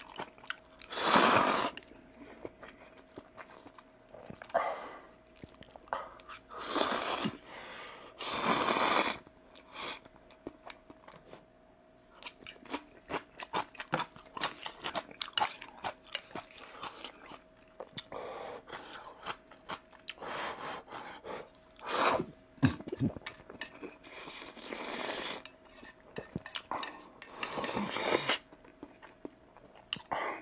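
Close-miked eating of kimchi ramen: several long, loud noodle slurps, the biggest about a second in, near 7 and 9 seconds and again near the end, with wet chewing and small clicks of chopsticks and bowl between them.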